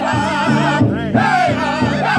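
Powwow drum group singing a men's chicken dance song in unison, several singers striking one large shared drum with padded beaters in a steady beat.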